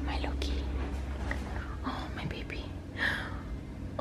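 A woman whispering softly in short breathy phrases, with a low steady hum underneath in the first second or so.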